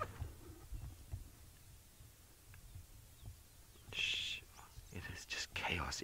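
Faint low rumble, with a short breathy hiss like a whispered breath about four seconds in, and a man's voice starting to speak near the end.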